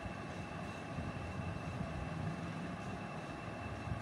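Steady background noise, a low even hum with a faint steady high whine running through it.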